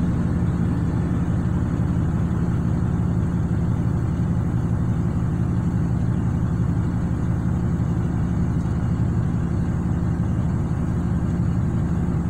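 A vehicle engine idling steadily, with an even low hum heard from inside the cab.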